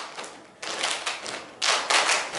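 A row of kneeling dancers clapping and slapping their hands in unison: a quick run of sharp claps, the loudest group near the end.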